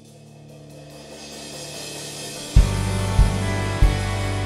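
Live worship band starting a song: a soft sustained pad with a rising swell builds for about two and a half seconds, then the full band comes in with kick-drum beats about every 0.6 s over a sustained bass and guitars.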